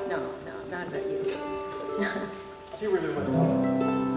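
Acoustic bluegrass string band ringing out at the close of a tune: guitar and mandolin notes fade away, then a few held string notes sound again near the end.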